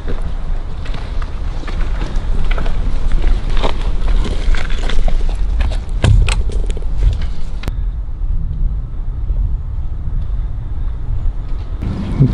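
Wind rumbling and buffeting on the microphone outdoors, with scattered sharp clicks and taps in the first seven seconds or so. About eight seconds in, the sound changes abruptly to a duller rumble with the upper hiss gone.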